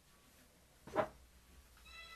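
A single short meow, like a domestic cat's, about a second in.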